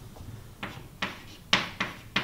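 Chalk writing on a blackboard: four short, sharp chalk strokes and taps against the board, roughly half a second apart.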